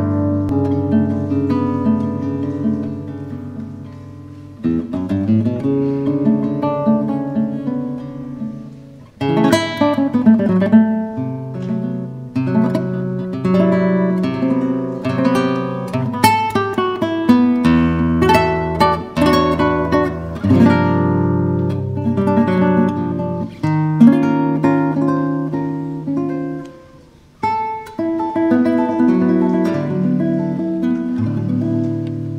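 Classical guitar played solo: plucked chords and melody notes, with a few brief pauses where the notes ring away before the playing picks up again.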